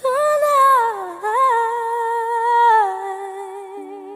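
A female singer's wordless held vocal line with vibrato and little accompaniment: the note dips, jumps back up, then slides down near the end to a lower sustained tone.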